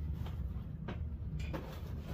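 A cardboard box being handled and set down: a few faint knocks and brushes over a low, steady room hum.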